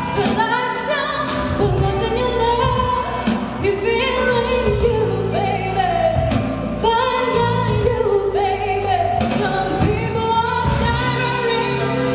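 A woman singing a slow English-language love ballad live into a handheld microphone, over an instrumental accompaniment with a steady beat.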